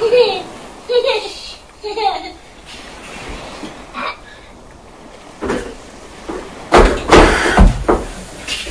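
A small child's voice in the first couple of seconds, then near the end a loud, rough rush of air lasting about a second: a stroke of the hand pump forcing air into an inflatable stand-up paddle board that is already fairly firm.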